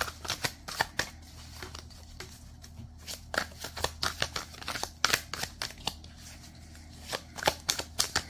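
A deck of tarot cards being shuffled overhand by hand: runs of quick, irregular card flicks and slaps, with two short lulls between the runs.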